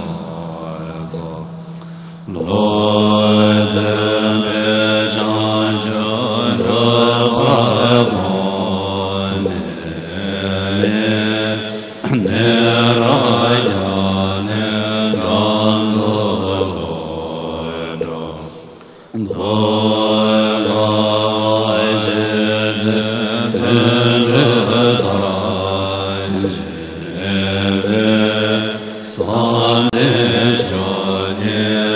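Buddhist verses of homage chanted in long melodic phrases over a steady low drone, with brief pauses between phrases.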